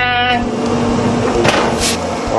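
A drawn-out 'bye-bye' voice trails off just after the start, over the steady hum of a pellet smoker's fan. There is a click and a short hiss near the end.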